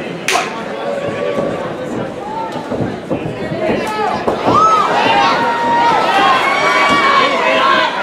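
Fight crowd and corner voices shouting and cheering over each other, swelling louder about halfway through as the fighters engage. A single sharp crack comes just after the start.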